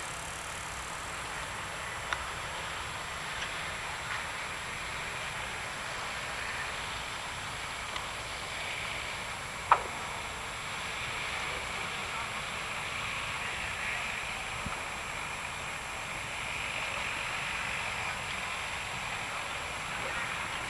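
Fire from a burning derailed chemical freight train, heard from a distance: a steady noise with scattered sharp cracks, the loudest about halfway through.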